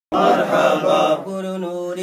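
Male voices chanting an unaccompanied devotional naat in praise of the Prophet. The opening phrase gives way, a little over a second in, to one long held note.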